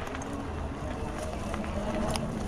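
Fat-tire electric bike running at full speed on throttle over a dirt trail: a steady low rumble of tyres on the ground and wind on the microphone, with a faint steady hum from the 750 W Bafang hub motor.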